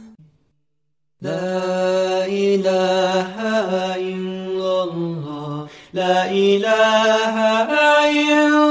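Islamic devotional chant (nasheed): a single voice singing long held notes that step up and down in pitch. It starts about a second in after a brief silence and breaks off briefly about three-quarters of the way through.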